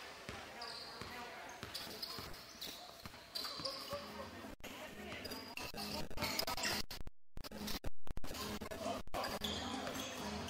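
Live basketball game in a gym: the ball bouncing on the hardwood court and short, high-pitched sneaker squeaks, over the voices of players and spectators echoing in the hall. The sound cuts out briefly about seven seconds in.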